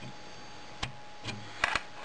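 A few small clicks and taps as a lithium coin-cell memory backup battery is pushed into its plastic holder under a metal spring clip on a radio's circuit board, with a short cluster of louder handling sounds near the end.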